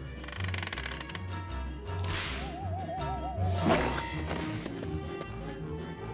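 Cartoon sound effects over background music with a steady bass beat: a whoosh about two seconds in, a warbling whistle for about a second, then a sudden hit as thrown blueberries splat.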